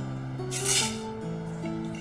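Background music of held, sustained notes that change pitch every half second or so, with a brief hiss about half a second in.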